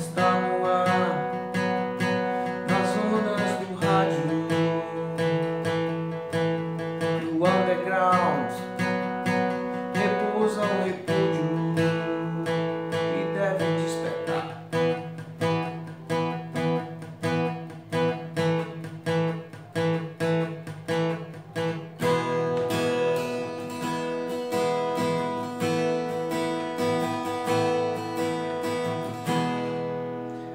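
Steel-string acoustic guitar strummed in a steady rhythm, playing E, A and B chords as two-string power chords on the third and fourth strings. The chord pattern changes about two-thirds of the way through.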